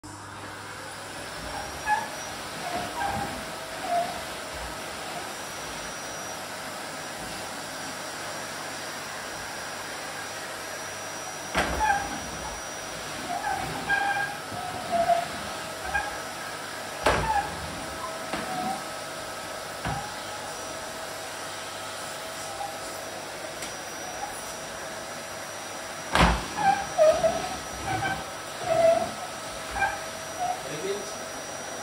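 Canister vacuum cleaner motor running steadily, blowing air out through its hose, with a rising whine as it spins up at the start. A few sharp knocks and clusters of short squeaky sounds stand out over it.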